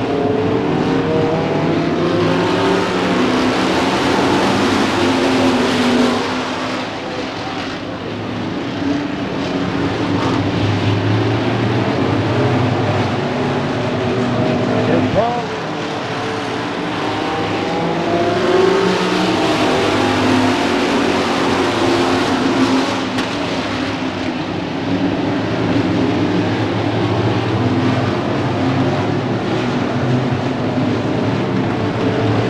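A pack of stock cars racing at speed on a short oval, many engines running together. The sound swells twice as the field sweeps past, once in the first few seconds and again about two-thirds of the way through.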